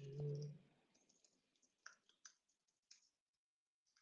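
Faint computer keyboard clicks from a few separate keystrokes as a terminal command is typed, preceded by a brief low hum in the first half-second.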